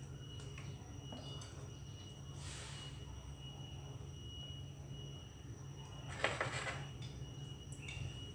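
Faint steady hum from an electric cooktop heating an aluminium pot of oil, with a thin high whine over it. A soft hiss comes about two and a half seconds in, and a brief, louder rustling noise about six seconds in.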